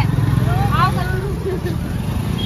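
Busy street traffic: a steady low rumble of motor vehicle engines close by, with voices talking over it.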